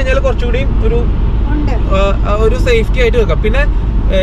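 Steady low road and engine rumble inside a moving car's cabin, under a man talking.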